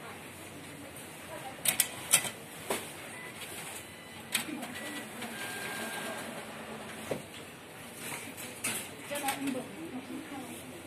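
A Kaspi Bank ATM being operated: scattered sharp clicks and knocks from its slots and mechanism, with a few faint short beeps, over steady shop background noise.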